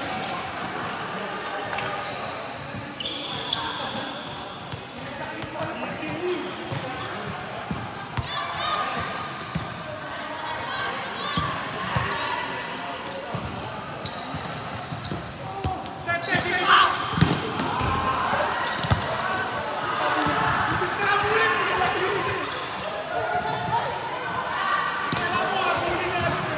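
Volleyball play in a large indoor sports hall: repeated sharp ball hits and bounces among players' voices, echoing in the hall, getting louder and busier about two-thirds of the way in.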